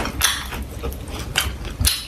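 Crispy fried quail crackling as it is torn apart by hand and chewed close to the microphone, several sharp crackles and crunches.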